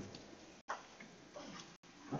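Faint room noise with a few soft clicks and knocks, broken twice by brief dropouts where the audio cuts out completely, typical of the service's sound problems.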